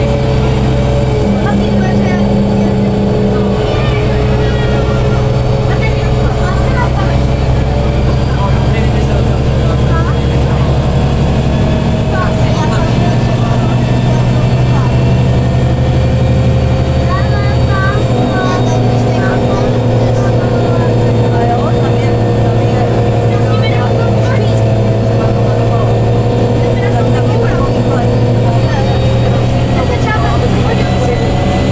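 Karosa B961 articulated city bus heard from inside the passenger cabin while driving: a steady diesel engine and drivetrain drone, its note stepping down or up a few times as the speed changes.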